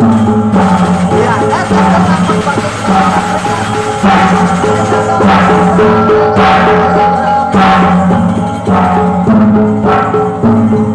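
Gendang beleq ensemble, the Sasak drum-and-gong music of Lombok, played by a children's troupe: large double-headed drums beaten steadily with sharp crashing accents about once a second, over a low held tone that steps between two notes.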